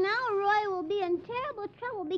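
A high-pitched voice speaking in short phrases that rise and fall in pitch, with brief gaps, not caught as words.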